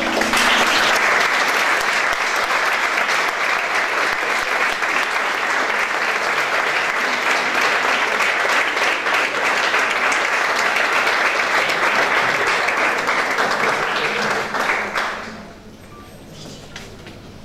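Audience applauding a piano performance: steady clapping that begins as the last piano notes stop and dies away near the end.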